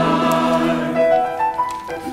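Church choir with piano holding a sung chord, with the voices dying away about halfway through and the piano playing on alone in short stepping notes.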